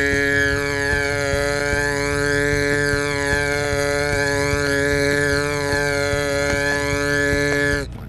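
A man's voice holding one long, steady sung note at an unchanging pitch, a drawn-out imitation of a sustained vocal tone; it stops just before the end.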